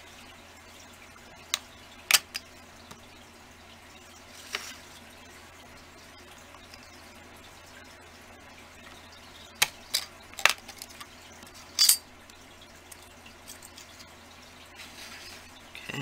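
Scattered small clicks and taps of a blade and hand tools against a glass work surface while trimming polymer clay, about eight in all, most of them near the start and in a cluster around the middle, over a low steady hum.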